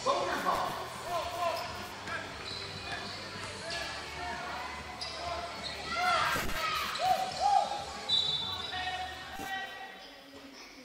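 Basketball being bounced and several short sneaker squeaks on a hardwood gym floor during play, with voices of players and spectators echoing in the hall.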